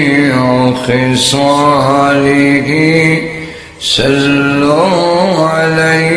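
A man chanting Arabic salawat, blessings on the Prophet, in a slow melodic style into a microphone: long held notes with gliding turns between them, and one short breath break about four seconds in.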